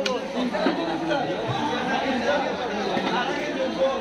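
Background chatter of several people talking at once, overlapping and unintelligible, at a steady level.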